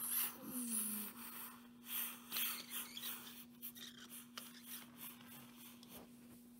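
Cotton-wool balls rustling and scraping as a hand presses them around a plastic toy train on its track. There are several short rustles in the first three seconds, then lighter rubs and a few small clicks.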